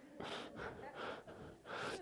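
A man's faint breaths close on the microphone after a laugh: a few short puffs, then an inhale near the end.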